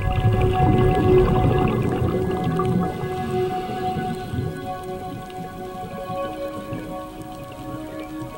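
Slow ambient music of long held notes, with a loud rough rushing noise over roughly the first half that then fades away.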